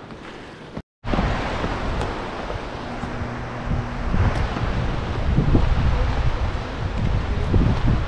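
Wind noise buffeting the handheld camera's microphone outdoors, a loud, steady rushing rumble. About a second in the sound cuts out for a moment, and the wind noise comes back louder.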